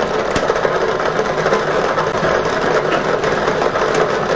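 Lottery draw machine running, its numbered balls rattling and clattering against each other and the chamber in a steady, continuous racket.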